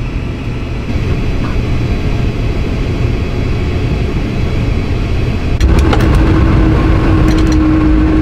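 Embraer E195-E2's Pratt & Whitney PW1900G geared turbofan being started, heard from the cockpit: a steady low rumble that grows louder about a second in. Near the end it jumps louder, with a steady hum and a few clicks.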